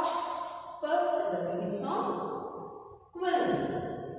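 A woman's voice in several drawn-out, level-pitched utterances, sounding out words by their beginning sounds.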